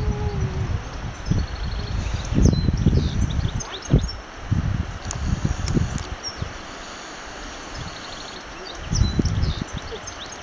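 Gusty wind buffeting the microphone in uneven surges, easing for a couple of seconds late on, with small birds chirping and trilling throughout.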